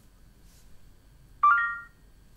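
Samsung Galaxy S6's S Voice assistant sounding a short electronic chime about one and a half seconds in, fading within half a second: the phone's tone that it has finished listening to a spoken question.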